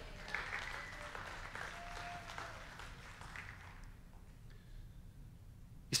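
Faint congregation response in a church sanctuary: scattered clapping and a few murmured voices, dying away over the first three or four seconds to room tone.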